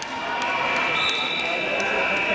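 Scoreboard buzzer sounding one steady high tone, starting about half a second in, as the match clock runs out to end the period.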